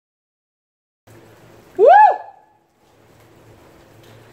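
A man's loud celebratory "woo!" whoop about two seconds in, its pitch rising and then falling within half a second. It comes after about a second of dead silence, over faint steady background hiss.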